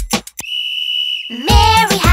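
A single steady, high-pitched whistle tone held for about a second, between the end of a beat-driven tune and the start of a children's song. The song's music and singing come in near the end.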